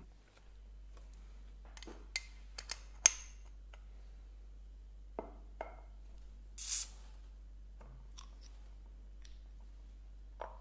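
A bottle of beer being opened: a few sharp metallic clicks and knocks of an opener on the crown cap, the loudest about three seconds in, then a short hiss of escaping gas as the cap comes off, about seven seconds in.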